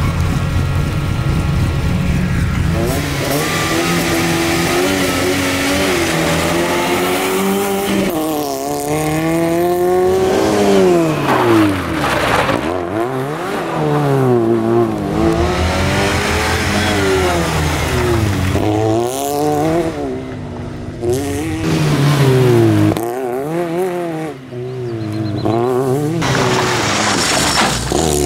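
Fiat Seicento rally car's small four-cylinder engine idling steadily, then revving hard as it sets off and accelerates. Its pitch climbs and drops again and again through gear changes and lifts off the throttle.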